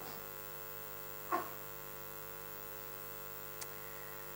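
Steady electrical mains hum, with one brief short sound about a third of the way in and a faint click near the end.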